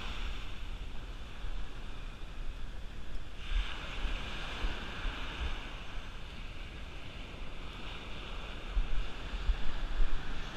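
Ocean surf breaking and washing up a sandy beach, with a fresh wave surging in about three and a half seconds in. Wind buffets the microphone, gusting harder near the end.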